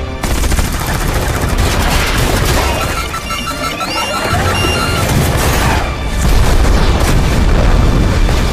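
Fighter jet's cannon firing rapid bursts, with a quick beeping tone partway through. About six seconds in, the target jet is hit and heavy explosions follow, all under a dramatic film score.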